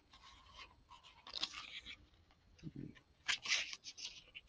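Paper pages of a small hardbound booklet being turned by hand: two short bursts of rustling, about a second and a half in and again past three seconds.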